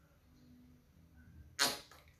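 A quiet room, then a single quick whoosh, falling in pitch, about one and a half seconds in.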